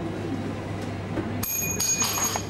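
Two sharp metallic clinks about 0.4 s apart near the end, each leaving a high, clear ringing tone that carries on, over a steady low hum.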